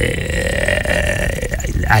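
A man's long, drawn-out hesitation "uhhh": one held vowel lasting nearly two seconds, breaking into speech near the end.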